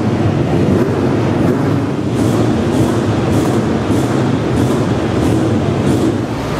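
Car engine idling, a loud, steady rumble echoing in a large hall. From about two seconds in, a faint hiss pulses about every half second over it.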